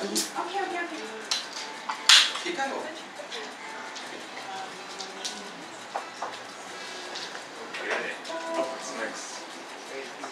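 A few sharp clinks and knocks of a cup being handled and set down, the loudest about two seconds in, over quiet murmured talk.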